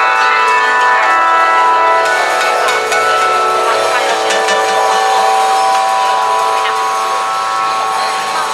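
A rainstick tilted slowly back and forth, its pellets trickling down the tube with a soft, steady rattle, over a held chord of several sustained tones.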